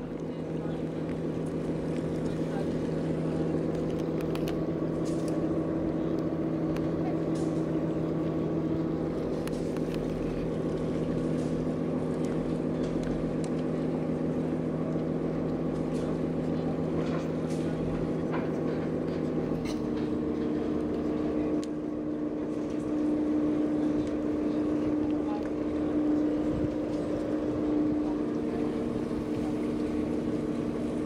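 Canal tour boat's engine running steadily as the boat moves slowly along the canal, a low, even hum; its note changes about two-thirds of the way through.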